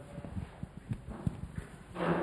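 Microphone handling noise: a run of soft, irregular low knocks and bumps.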